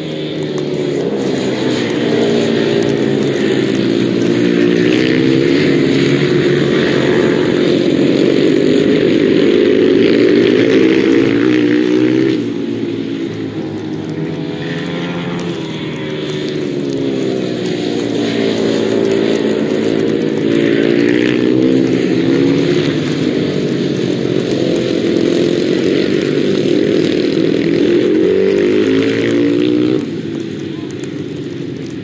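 Ice speedway motorcycles racing around the ice track, several engines overlapping, each rising and falling in pitch as the riders open up on the straights and back off into the turns. The sound eases briefly about twelve seconds in, then builds again.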